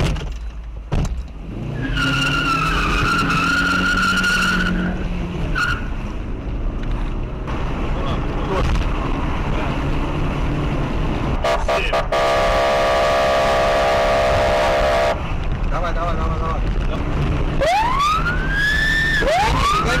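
Inside a police patrol car, the engine and road noise run throughout. A wavering high tone lasts about three seconds, starting two seconds in, and a steady buzzy horn-like tone sounds for about three seconds near the middle. Near the end the police siren starts wailing, sweeping up and down in pitch twice.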